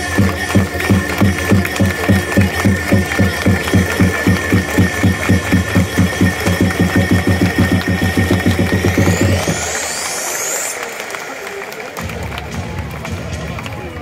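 Electronic pitcher's entrance music over a baseball stadium's public-address system, with a fast steady beat and heavy bass. About nine seconds in, a rising sweep builds and the beat drops out. The bass comes back more softly around twelve seconds.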